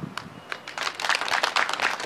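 Audience clapping, starting about half a second in and growing louder.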